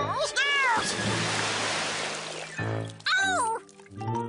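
Cartoon sound effect of a short rain shower: a rush of falling water lasting about two seconds. Before and after it come squeaky, sliding cartoon vocal sounds over music.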